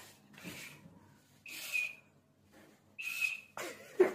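Pet monkey giving two short, high squeaks, about a second and a half apart, each with a breathy hiss.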